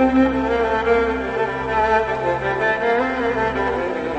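Music: a bowed string ensemble of violins and cellos playing a slow, gliding melody over a steady low drone.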